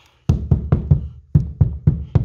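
Repeated banging on the cut edges of a hole in a plasterboard wall, about four hollow knocks a second starting a moment in, pressing the edges in so no lip is left before filling.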